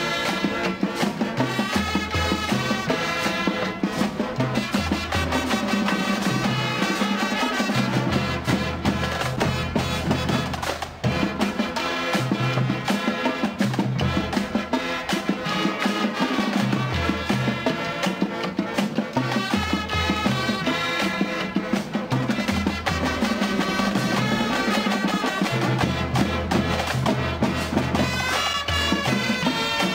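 A high school marching band playing live: trumpets and sousaphones over snare drums and cymbals, with a steady beat and a bass line moving in long held low notes.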